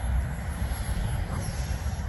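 Gusty wind buffeting the microphone, an uneven low rumble, with a thin steady high-pitched whine throughout.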